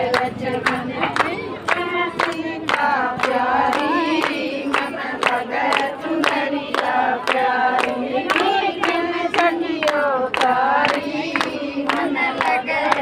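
A group of women singing a bhajan together, kirtan-style, with steady rhythmic hand-clapping keeping the beat.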